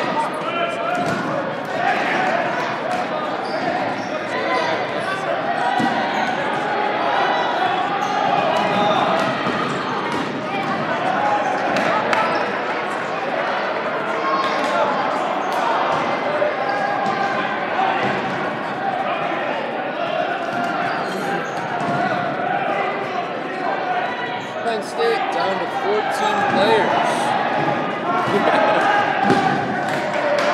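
Dodgeballs thrown and smacking off players and bouncing on a hard gym floor, under steady overlapping shouting and calls from many voices, echoing in a large hall.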